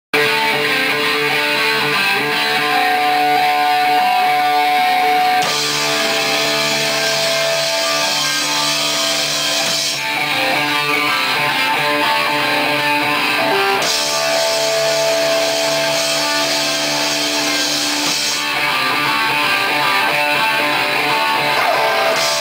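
Live rock band playing loud: two Les Paul-style electric guitars and a drum kit. The music alternates between two sections every four to five seconds, one of them with a bright crash of cymbals over it.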